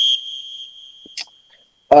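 A single high-pitched steady tone, like an electronic beep or chime, that fades away over about two seconds, with a faint click about a second in.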